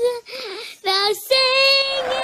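A young girl singing a wavering, sing-song line that ends on a long held note.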